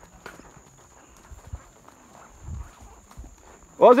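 A horse walking on soft, muddy ground, its hooves giving a few faint, irregular thuds. Near the end a man gives a loud, drawn-out call, the loudest sound.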